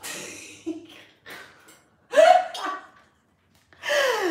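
A woman laughing and gasping in short breathy bursts, with one short voiced cry about two seconds in.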